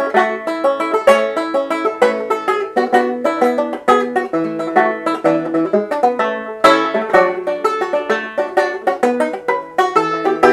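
Solo banjo played fingerstyle in the classic banjo manner: a brisk quickstep of rapid plucked notes and chords, with a strong accented chord about two-thirds of the way through.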